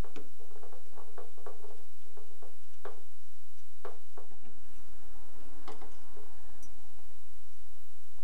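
Flathead screwdriver backing a screw out of a steel axe bracket on a jeep body: irregular small metallic clicks and scrapes, thickest in the first three seconds, then a few scattered ones, over a steady low hum.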